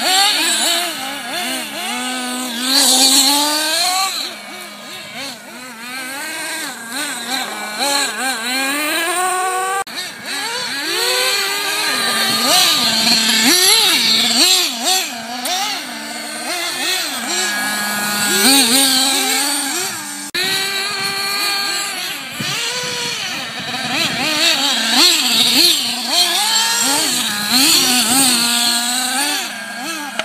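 Radio-controlled off-road buggies' small high-revving engines, several at once, repeatedly revving up and dropping back as the cars race around a dirt track.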